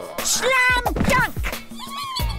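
A high, wavering cartoon-voice cry slides down in pitch over backing music with a beat. Near the end, many short squeaky voices start up.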